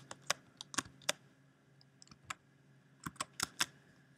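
Computer keyboard keystrokes: a dozen or so short, sharp taps, single and in quick pairs or triplets, scattered with gaps between.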